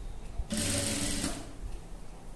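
Sewing machine stitching through a dress panel in one short steady run of under a second, starting about half a second in.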